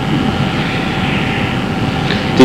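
Steady background noise with a faint, even hum and no distinct events: the room or recording noise of the interview.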